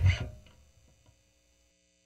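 Final note of the song on an electric bass (Fender Jazz Bass) together with the backing recording: one short accented hit that dies away within about half a second, followed by near silence with a faint hum.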